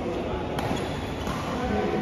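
Badminton rackets striking a shuttlecock: a sharp crack about half a second in and another near the end of the rally.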